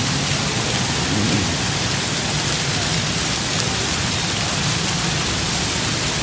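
Water pouring down an artificial rock waterfall into its pool: a steady, even splashing rush.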